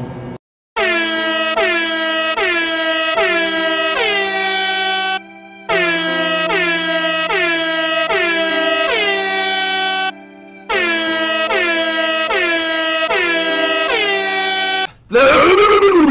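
Air horn sound effect blaring in three runs of five blasts, each blast bending down in pitch as it starts, over a low steady drone. About a second before the end it gives way to a loud wavering sound that sweeps up and down.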